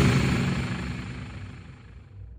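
The fading tail of a logo sound effect, a deep, noisy swell that dies away over about two seconds and leaves a low rumble.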